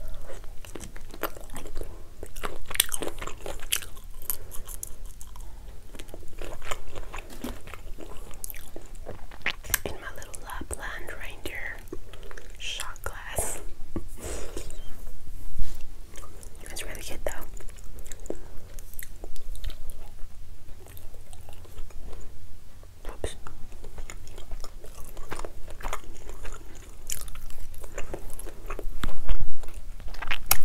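Close-miked chewing of shrimp and ravioli: wet mouth sounds, bites and many small lip and tongue clicks, with a few sharper clicks along the way.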